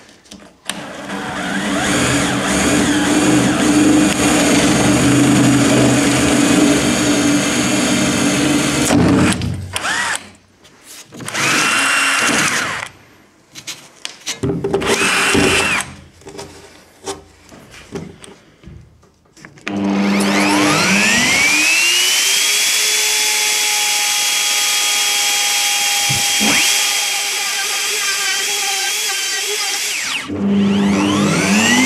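A drill bores through the plywood deck with a Forstner bit for about eight seconds, followed by two short bursts of drilling. About twenty seconds in, a small trim router spins up with a quickly rising whine and then runs at a steady high speed.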